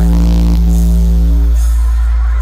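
Loud electronic DJ music over a truck-mounted speaker stack: one long, heavy held bass note with a steady chord above it that fades out about a second and a half in.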